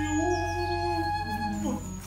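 Live contemporary chamber music: several held tones over a steady low drone, with sliding pitches near the end.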